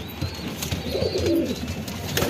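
Domestic pigeons cooing, with one low, rolling coo about halfway through, over scattered small clicks.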